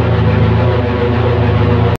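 Dark, droning background music: a low, sustained hum under many held tones, which cuts off suddenly at the very end.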